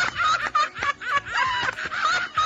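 A toddler laughing in quick, high-pitched bursts.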